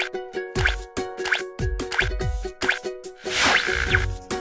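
Light plucked-string outro jingle with cartoon plop sound effects: four falling-pitch plops about 0.7 s apart, then a rushing swell of noise near the end as the logo appears.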